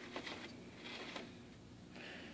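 Faint handling noise: a few light clicks and soft rustles over a low hiss, from the camera being moved and a hand reaching among potted seedlings.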